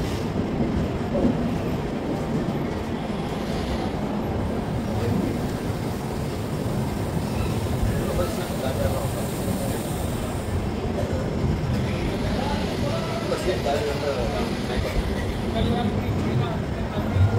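Steady rumbling noise of an Indian passenger train running on its tracks, with people's voices faintly mixed in.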